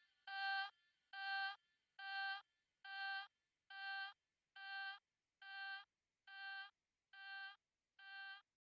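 A single synth note repeated a little more than once a second, each a short pitched beep, growing steadily fainter: the fade-out at the end of an electronic dance track.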